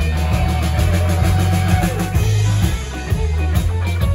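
Live rock band playing an instrumental passage: electric guitars over a driving bass guitar line and drum kit, with steady drum hits.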